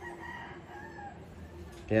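A rooster crowing faintly, one drawn-out call.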